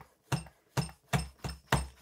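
Shock pump worked in quick short strokes at about 450 psi, about three pulses a second, each stroke with a short puff of air escaping through a leak in the pump, needle or valve setup that keeps the pressure from rising.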